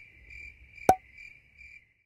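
Cricket chirping as an edited-in sound effect: a steady, pulsing high chirp, with a single sharp click about a second in.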